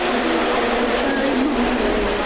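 A woman singing a Vietnamese bolero song without accompaniment, holding long notes that slide gently from one pitch to the next, over a steady rushing hiss.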